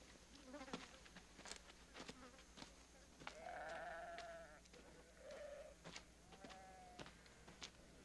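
Near silence: faint outdoor ambience with scattered small clicks and three faint, drawn-out calls. The longest call lasts over a second, starting a little past three seconds in.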